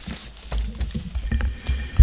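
Handling noise on a table microphone: a low rumble with scattered small knocks and faint rustling of paper as a student moves up to the mic.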